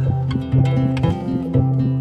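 An instrumental stretch of a French pop song with no singing: plucked guitar-like strings over low held notes that change about every half second.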